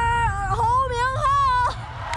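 A drawn-out, high-pitched voice-like cry, held on one note and then wavering up and down before breaking off near the end, over a steady low rumble.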